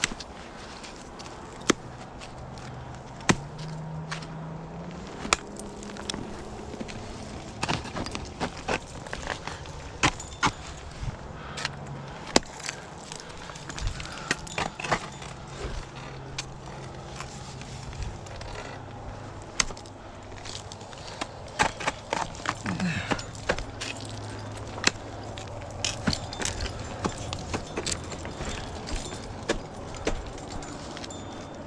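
Ice axes and crampons striking ice and crusted snow during an ice climb lead: a string of sharp, irregular picks and kicks, some much louder than others, with climbing gear clinking. A low steady hum runs underneath.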